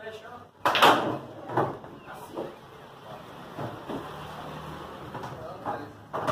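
Pool shot: the cue strikes the cue ball with a sharp crack about two-thirds of a second in, followed by several fainter clacks of balls hitting each other and the cushions.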